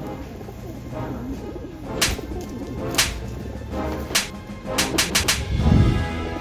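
Feral pigeons cooing over background music, with a quick run of sharp claps about five seconds in as two of them scuffle and flap.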